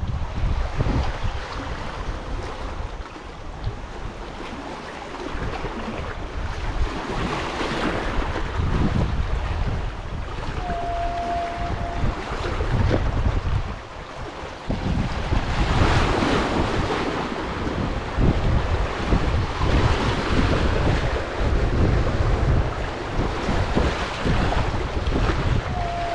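Small sea waves washing and splashing over shoreline rocks, swelling and ebbing in surges. Gusty wind buffets the microphone with a low rumble.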